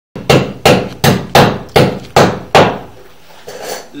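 Seven sharp knocks in an even rhythm, a little under three a second, each with a short ringing decay, then stopping about two and a half seconds in.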